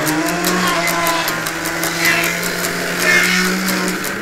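Distorted electric guitar slides up into a single note and holds it for about four seconds, over a steady beat of cymbal-like ticks.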